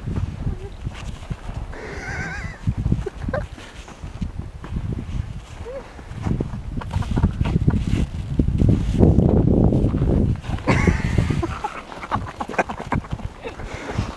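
Golden retriever sliding and rolling through snow, its body scraping and pushing through it in irregular low rumbling bursts, loudest past the middle. A short high wavering call sounds about two seconds in.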